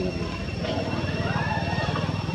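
A motor engine running steadily with a fast, even low pulse, under a thin steady high-pitched tone.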